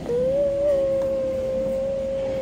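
A child's hand whistle: one long, steady hooting note blown into cupped hands. It starts abruptly with a slight upward bend, then holds on one pitch.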